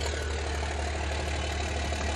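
A car engine idling steadily: a constant low hum under an even hiss.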